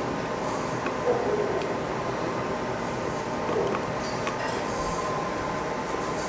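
Steady background noise of a workshop with a faint hum, under a few faint light taps and rubbing from hands smoothing a vinyl stencil onto a stainless steel tumbler.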